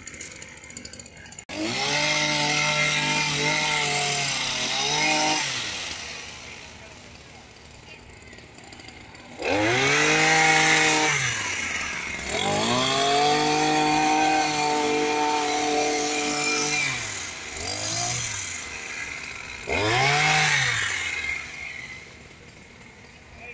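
Small petrol engine of a hedge trimmer revving in about five bursts, its pitch climbing, holding and dropping back with each squeeze of the throttle, and settling to a low idle between them, as the bushes are cut.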